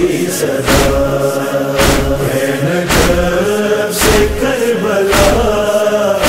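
Noha chorus holding a sustained, slowly shifting vocal drone between sung lines, over a sharp percussive beat a little under once a second.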